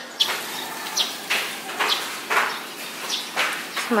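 Birds chirping outside in short, irregular calls over a steady background hiss.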